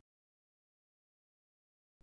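Digital silence: no sound at all.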